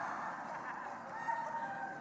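Congregation laughing after a joke, a diffuse spread of many voices that slowly dies down.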